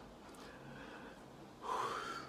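A woman's breathy 'whew' exhale near the end, after a stretch of faint room tone.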